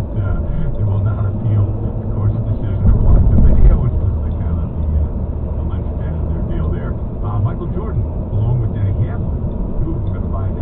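Car cabin driving noise, a steady low road and engine rumble that swells briefly about three seconds in, with faint muffled talk from the car radio underneath.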